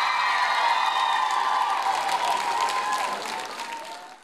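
Concert audience screaming and cheering with scattered clapping as the song ends, dying away near the end.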